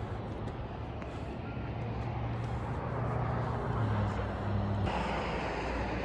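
A steady low hum over a hiss, like a vehicle running close by, slowly growing louder; the sound changes abruptly about five seconds in.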